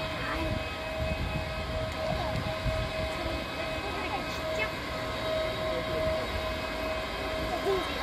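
Steady high whine over a low rumble from an Airbus A320neo-family jet airliner being pushed back by a tug for departure.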